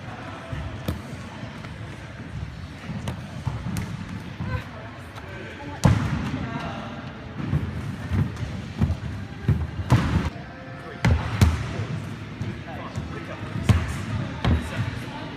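Irregular, echoing thuds of exercise equipment and feet hitting a sports-hall wooden floor during a circuit-training class, heaviest in the second half, with people talking in the hall.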